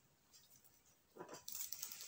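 Near silence for about a second, then faint, irregular rustling and light knocks of cosmetic bottles and packaging being handled and picked up.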